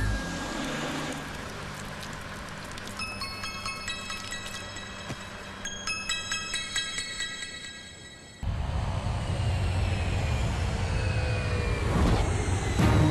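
Soft background music with high chiming tones. About eight seconds in it gives way to a sudden loud engine drone from a light propeller aircraft passing low, its pitch falling as it goes by.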